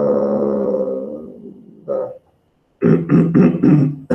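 A man's voice making wordless sounds: a long drawn-out hesitation sound that slowly fades, then a quick run of about six short voiced sounds near the end.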